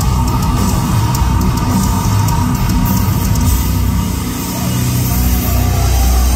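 A heavy metal band playing loud live, with drum kit, distorted guitars and crashing cymbals, recorded from within the crowd.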